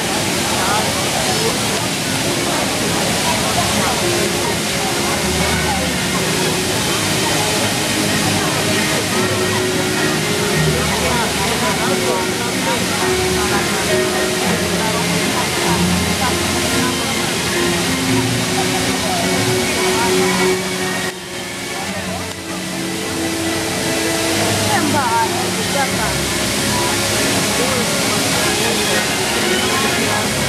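The Magic Fountain of Montjuïc's massed jets spraying, a steady rush of falling water that dips briefly about two-thirds of the way in. The show's music plays over it from loudspeakers, with crowd chatter.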